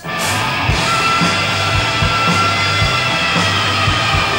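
Live rock band playing loud. The full band comes in right at the start: held electric guitar chords over bass, with a regular kick drum beating underneath.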